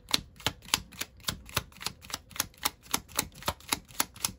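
A deck of tarot cards being shuffled by hand, cards slapping against each other in a quick, even run of clicks, about five a second.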